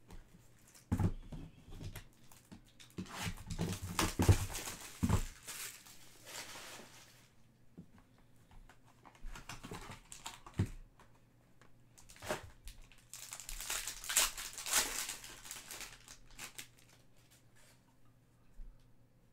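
Foil trading card pack being torn open by hand, its wrapper crinkling and rustling in two spells with light knocks of the cards being handled.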